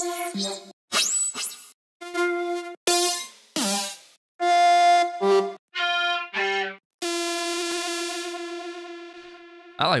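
Serum software synthesizer playing preset after preset while a lead sound is being chosen: short single notes of differing timbres, one after another with brief gaps. A rising sweep comes about a second in, and the last one is a long held note that slowly fades.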